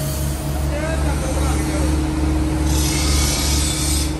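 A belt-driven polishing wheel shaft runs with a steady, evenly pulsing low hum, and a rush of hiss comes in about three seconds in as a knife blade is held to the wheel.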